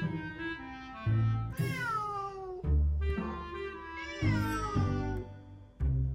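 Domestic cat giving two long, drawn-out meows, each sliding down in pitch, the first about one and a half seconds in and the second about four seconds in, over background music.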